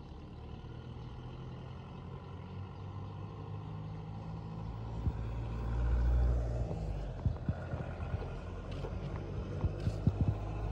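Motor vehicle engine running steadily, slowly growing louder, with a surge of low rumble about six seconds in. A few sharp clicks follow near the end.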